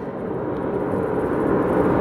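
Road and engine noise inside a moving car's cabin, a steady rumbling hiss that grows gradually louder.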